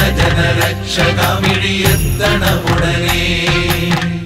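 Opening of a Malayalam Ayyappa devotional song: chanted vocals over instrumental backing with a steady percussion beat.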